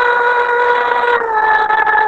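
A woman's singing voice holding one long, steady note, dipping slightly in pitch about a second in, heard over a video call.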